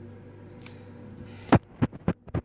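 A steady low electrical hum, then about one and a half seconds in a quick run of loud, sharp clicks, the first the loudest.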